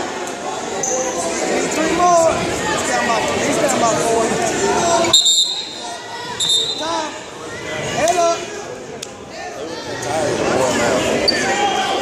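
Overlapping, indistinct voices of spectators and coaches calling out, echoing in a large gymnasium.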